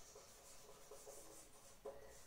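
Faint strokes of a marker writing on a whiteboard, with one brief tick near the end.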